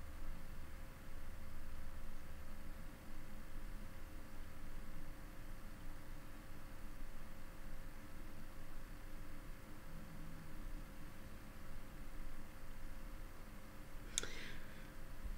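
Quiet room tone: a steady hiss with a low rumble and a faint steady hum-like tone, with no distinct events.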